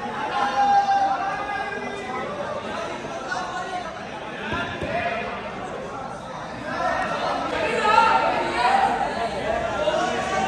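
Crowd chatter: many people talking over one another. It is louder about a second in and again near the end.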